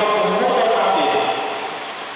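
A man's voice chanting a liturgical text into a microphone over a church sound system, in long held notes that trail off near the end.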